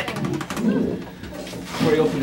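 A man laughing, low breathy chuckles in short bursts, with scattered talk.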